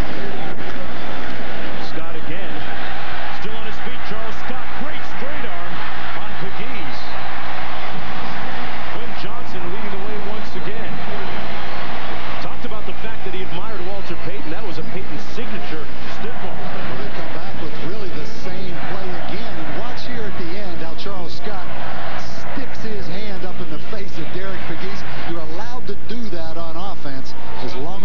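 Soundtrack of a television car commercial: a car driving fast, with engine and rushing noise, mixed with voices.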